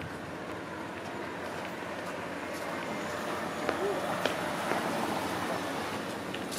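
Night-time city street ambience: a steady hum of traffic with indistinct background voices, growing slowly louder.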